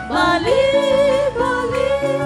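Worship music: a singing voice holds a long, wavering melody line that glides between notes, over steady accompanying chords.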